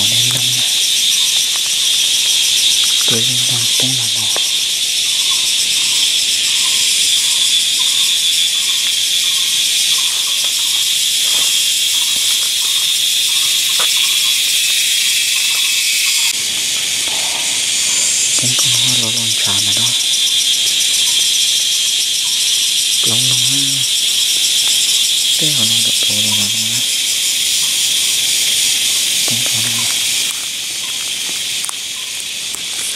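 Dense jungle insect chorus: a loud, steady, high-pitched shrill with a fast pulse. Short low voice-like calls break in a few times.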